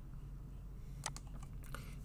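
A few computer keyboard keystrokes in quick succession about a second in, then one more shortly after, over a faint low hum.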